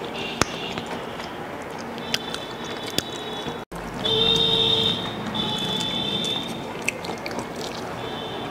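Mouth sounds of people chewing deep-fried singaras, with a few sharp wet clicks scattered through. The sound cuts out for an instant a little before halfway, and after that the background is louder, with a steady high tone.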